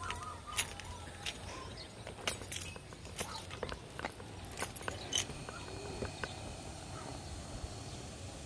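Quiet outdoor ambience with scattered light clicks and rustles from footsteps and a hand-held camera being moved.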